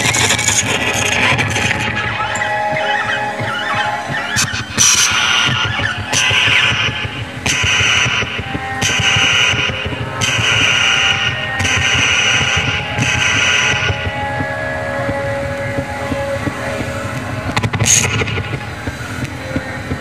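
Experimental electronic noise music played through amplifier speakers, made with a tangle of small electronic devices and cables. Harsh hissing noise blocks, about a second long, repeat roughly every second and a half through the middle of the passage, over a dense rumbling drone.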